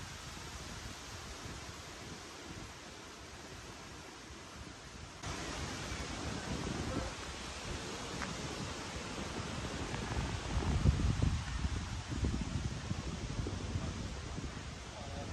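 Outdoor wind noise: gusts buffeting the microphone as an uneven low rumble over a steady hiss, strongest about eleven seconds in. The background steps up abruptly about five seconds in.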